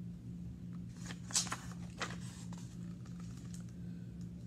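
A picture-book page being turned by hand: short paper rustles about a second in and again about two seconds in, over a steady low hum.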